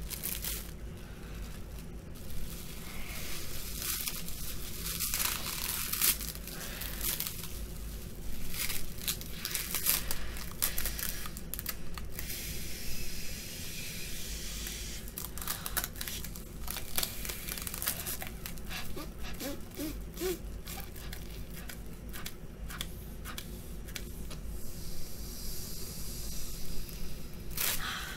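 Plastic wrap crinkling and tearing as it is pulled, stretched and pressed over a face, in irregular crackles that come and go.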